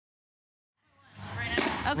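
Dead silence for just under a second, then the sound fades back in over about half a second: a low hum, then a person's voice starting to speak.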